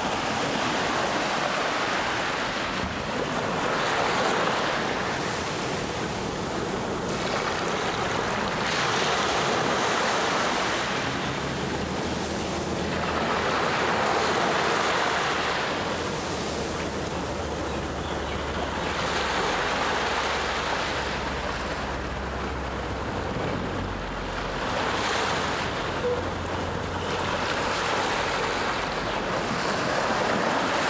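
Small, gentle sea waves washing up a sandy beach and running back, each surge swelling and fading about every five seconds.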